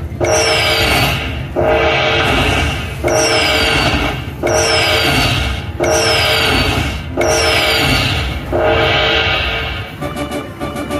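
Video slot machine's win-tally jingle: a bright chime with a falling whistle-like tone, repeated seven times about every one and a half seconds as each fireball's value is added to the win meter after the free spins.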